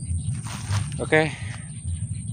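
A man's voice saying a short "oke" about a second in, over a steady low rumble.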